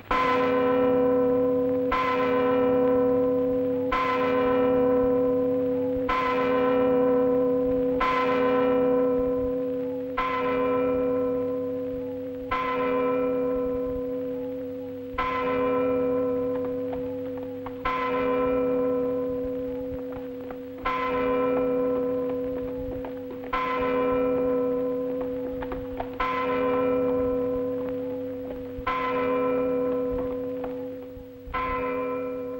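A large church bell tolling, its clapper pulled by a rope. It strikes about once every two seconds, slowing slightly later on, and each stroke rings on into the next.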